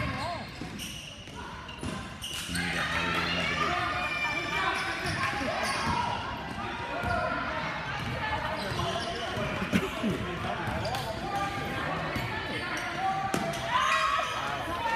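A basketball being dribbled and bouncing on a hardwood gym floor during play, a series of short knocks, under a steady mix of spectators' voices and shouts.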